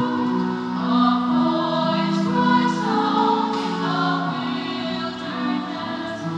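A choir sings a slow offertory hymn at Mass, holding each note before moving to the next.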